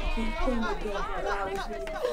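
Overlapping voices: several people talking at once, without clear words.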